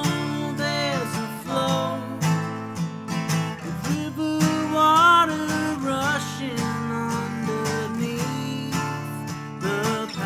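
An acoustic guitar strummed steadily through a song, with a voice singing long, gliding held notes over it.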